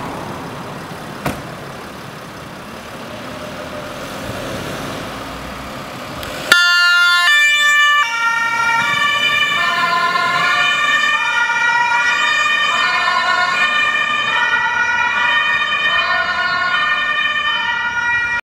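Ambulance siren: a Mercedes-Benz Sprinter ambulance pulls out with its engine running, then its two-tone siren switches on suddenly about six and a half seconds in and keeps alternating high and low. It signals an urgent emergency run.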